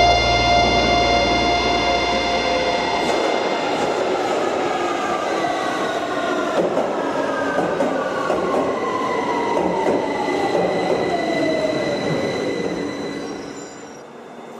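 A hardcore band's recording cuts off its heavy low end about three seconds in. It leaves a noisy outro in which several tones slide slowly downward, fading out near the end.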